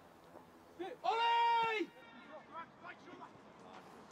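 A voice shouting from the pitch: one long, loud call about a second in, lasting just under a second, followed by fainter shouts.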